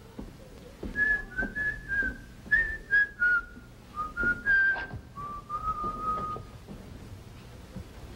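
A man whistling a short, casual tune: about a dozen brief notes that wander downward, ending on a longer held note about six and a half seconds in. A few light knocks sound underneath.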